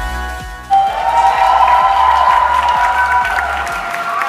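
Live band music with a steady bass beat; just under a second in, loud crowd cheering and a long held note break in over it.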